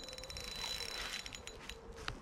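Abu Garcia Superior spinning reel's drag ticking rapidly as a hooked tench pulls line off against it, which the angler can't stop.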